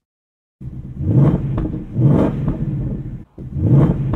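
2024 Ford Mustang Dark Horse's 5.0-litre V8 being revved. It starts about half a second in and swells and falls in repeated blips, about one a second, with a brief break just after three seconds.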